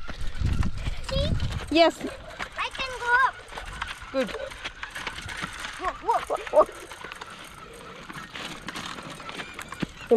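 Child's bicycle rolling over a bumpy dirt track, with faint voices and a low rumble in the first two seconds.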